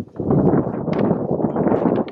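Wind buffeting the microphone outdoors: a loud, steady rushing noise with no clear pitch.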